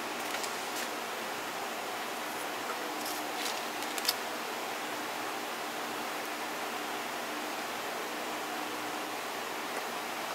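Steady background hiss with a faint steady hum, broken by a few light clicks and one sharper tick about four seconds in.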